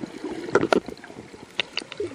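Underwater water noise heard through a camera housing on a speargun as a freediver swims, with irregular knocks and clicks; the loudest two knocks come about half a second and three-quarters of a second in.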